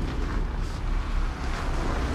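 City bus pulling in to the stop close by: a steady low engine rumble under an even rushing noise.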